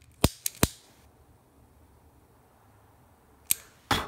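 Metal lighter clicking as it is used to burn and seal the cut end of the paracord. Three sharp clicks come in quick succession just after the start, and two more come near the end.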